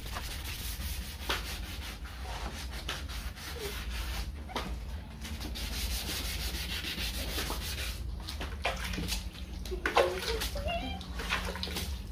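Hand wet-sanding of a yellowed plastic car headlight lens with 400-grit sandpaper on a block: repeated back-and-forth rubbing strokes that take off the yellowed surface. A short voice-like sound comes near the end.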